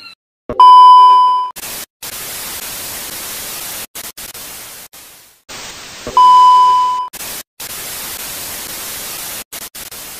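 Two loud, steady electronic beeps of a single pitch, each just under a second long, one near the start and one about halfway. Each is followed by a loud hiss of static that cuts in and out abruptly, with short gaps of silence between stretches.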